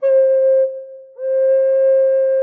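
Native American flute in F minor, Taos Pueblo style, playing two tongued notes on the same middle pitch, demonstrating the 'ka' and 'ra' articulations. The first note is short and fades; the second starts about a second in and is held steady.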